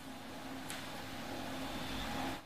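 Quiet steady background hiss with a faint low hum, with no speech, in the pause between the anchor's question and the guest's answer.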